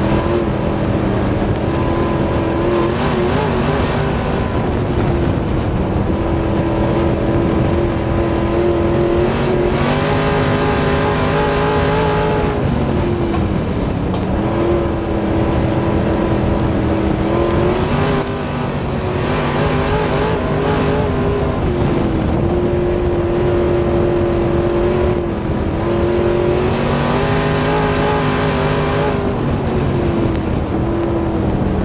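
B-Mod dirt track race car's V8 engine heard from inside the cockpit at racing speed, its pitch rising and falling several times as the car laps the track, with a steady rush of noise underneath.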